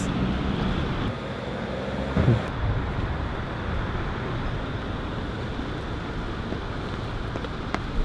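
Steady city street ambience: traffic noise from the road beside the canal, with wind buffeting the microphone.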